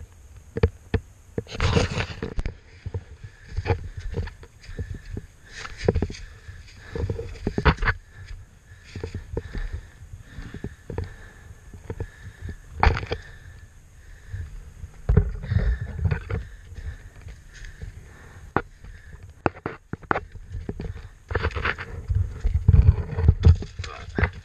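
Irregular footsteps of riding boots scuffing and crunching over rock and dry leaves on a steep climb, with the dirt bike's engine silent. Near the end come louder knocks and scrapes as the fallen bike is reached and handled.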